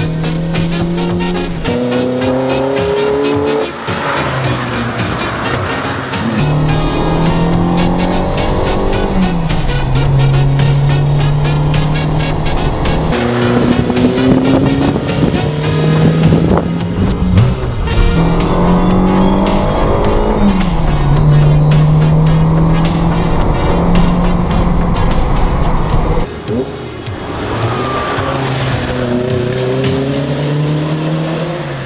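Fiat Ritmo 130 TC Abarth's 2-litre twin-cam Lampredi four, fed by two twin-choke carburettors, revving hard and climbing in steps as it is driven through the gears, with the pitch dropping at each shift. Music runs underneath.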